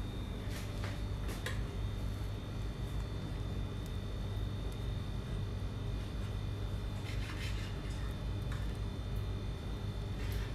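A few faint taps and scrapes of a knife cutting a bread sandwich on a wooden board, over a steady low hum.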